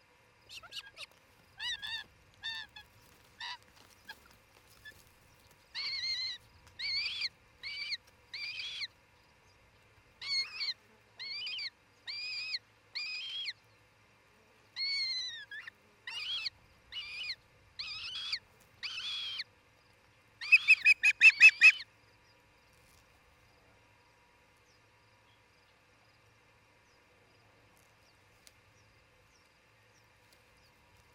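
Osprey calling at the nest: a series of short, high, whistled chirps, roughly one a second, ending in a quick, loud run of rapid chirps.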